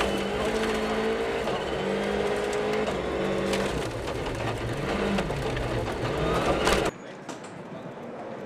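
Rally car engine running hard on a gravel stage, its pitch rising and falling with throttle and gear changes, over the crunch of gravel and stones clicking against the car. The sound stops abruptly near the end, giving way to a much quieter background.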